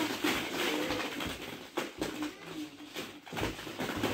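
Hollow plastic ball-pit balls tumbling out of a mesh bag and clattering against each other and onto the floor of an inflatable pool: a run of quick, irregular light knocks.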